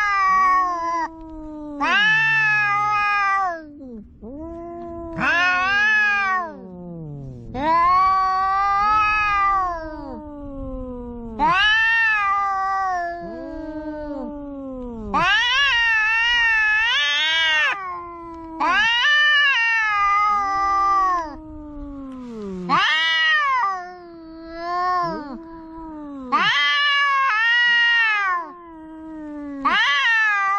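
Two cats yowling at each other in a face-off: about ten long, drawn-out threat yowls, each rising then falling in pitch and some wavering, following one another with short gaps. This is the caterwauling of an aggressive standoff between two cats.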